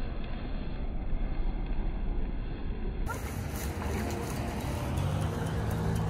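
A steady low rumbling noise, then background music with held notes coming in about halfway through.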